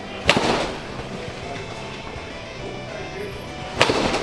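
Rawlings Hyper Mach 3 rubber-ball bat hitting an M-ball off a batting tee into a net: two sharp cracks about three and a half seconds apart, the first slightly louder, each with a short ring.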